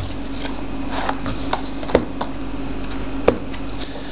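Hands handling an SSD's cardboard and plastic retail packaging: rubbing and scraping with scattered light clicks, two sharper ones about two seconds in and just after three seconds, over a steady low hum.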